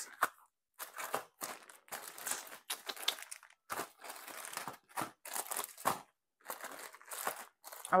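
Plastic wax-melt tubs and packaging handled and rummaged through by hand: irregular crinkling rustles and light knocks.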